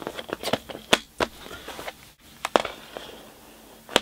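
Plastic CD jewel cases being handled: a quick run of sharp clicks and taps in the first second and a half, two more clicks a little past halfway, and a last click at the end.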